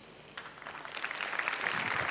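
Water in a stainless saucepan crackling and hissing as the pan goes back on the hot burner, starting about half a second in and growing louder.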